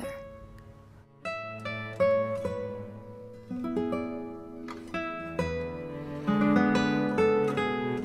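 Background music: acoustic guitar picking single notes and chords, each note struck and left to ring.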